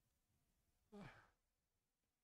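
Near silence, broken about a second in by one short, faint sigh that falls in pitch.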